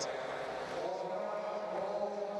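Steady background sound of an indoor velodrome: a level drone with a low hum over a light wash of noise.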